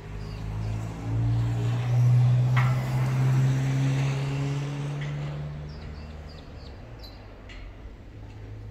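Diesel engine of a semi-trailer tanker truck going past on the road, a steady low engine note that swells to its loudest about two seconds in and then fades away.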